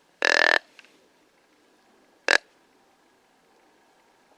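Deer grunt call blown twice to draw in a buck: a short, pulsed, burp-like grunt lasting about a third of a second, then a much briefer grunt about two seconds later.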